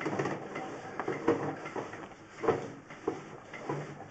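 Sewer inspection camera's push cable being fed quickly down a drain line, with scattered irregular knocks and rattles over a low hiss.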